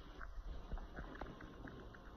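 Faint handling noise from a handheld phone being moved about: a low rumble with scattered small clicks and knocks.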